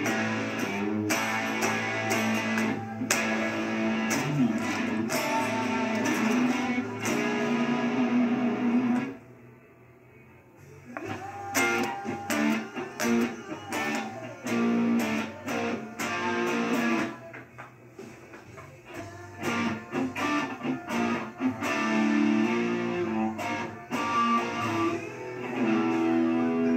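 Homemade Stratocaster-style electric guitar played along with a rock recording that has drums. The music drops away suddenly about nine seconds in and comes back a couple of seconds later.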